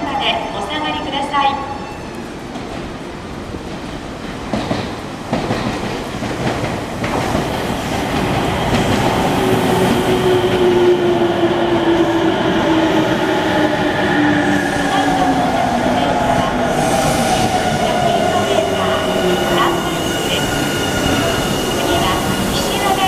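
Nankai Rapi:t limited express electric train pulling in and braking, its motor whine falling slowly in pitch as it slows, with a steady high squeal in the second half.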